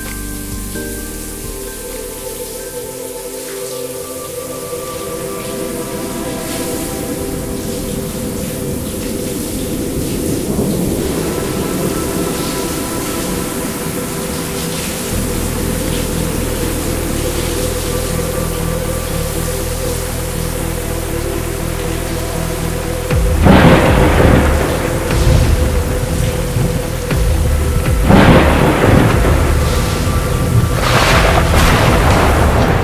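Thunderstorm soundscape of steady rain over a sustained ambient music drone. The rain grows denser partway through, and two loud thunder claps come in the last seven seconds. It is the storm effect of an experience shower that plays water, sound and light effects together.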